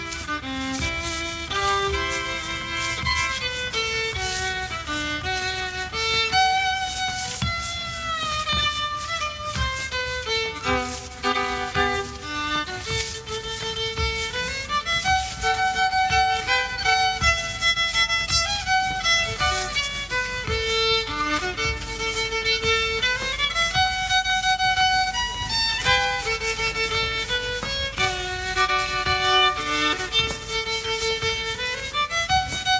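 Solo fiddle playing an old-time folk dance tune, one melody line of moving and held notes.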